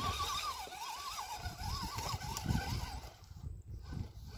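Electric motor of a Vaterra RC rock crawler whining as it climbs over rocks, its pitch wavering quickly up and down with the throttle for about three seconds before fading out.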